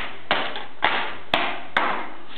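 A dark handheld object striking a folded sheet of paper on a tile floor: four sharp knocks about half a second apart, each with a short scraping tail.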